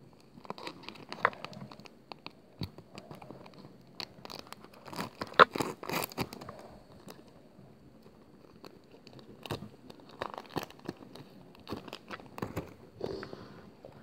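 Foil Pokémon card booster-pack wrapper crinkling and tearing as it is worked open by hand, in irregular crackles and rustles that come in clusters, busiest near the middle, with cards handled afterwards.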